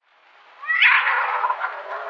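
A cat yowling: a rising cry about three-quarters of a second in, drawn out into a rougher wail that fades near the end.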